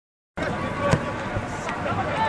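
Live football match sound cutting in abruptly about a third of a second in: a steady stadium background of voices from players and spectators, with one sharp thud of a ball being struck about a second in.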